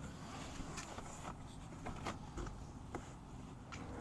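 Faint rustling and a few soft clicks of a fabric mesh window screen sleeve being pulled down over an open car door's frame, against a low background rumble.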